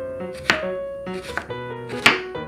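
Chef's knife slicing a red onion on a bamboo cutting board: two crisp knocks of the blade on the wood, under soft background music.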